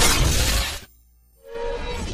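Sound effects from an animated logo intro: a loud, noisy hit dies away within the first second, and after a short gap a second effect with a held tone swells in near the end.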